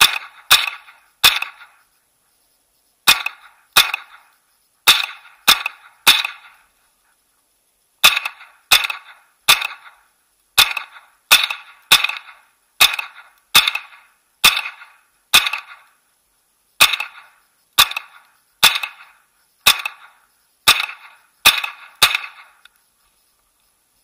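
Smith & Wesson M&P 15-22, a semi-automatic .22 LR rifle, fired shot after shot: about two dozen single shots at a steady pace of roughly one a second, with a few short pauses, stopping shortly before the end.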